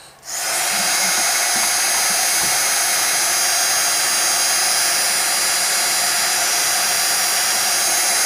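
Embossing heat tool switching on and running steadily, its fan blowing with a faint high whine, as it melts a thick layer of embossing powder.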